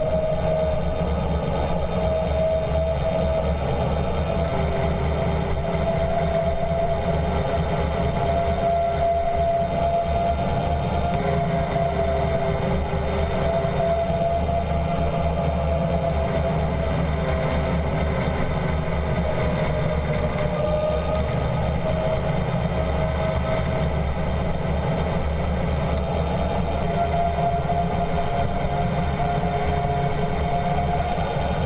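Bicycle coasting fast downhill: a steady rush of tyres on asphalt and wind, with a sustained whine from the brakes held on for the descent, its pitch drifting slowly up and down.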